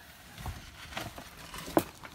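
A few faint knocks and clicks from someone climbing out of a vehicle onto gravel, the sharpest knock near the end.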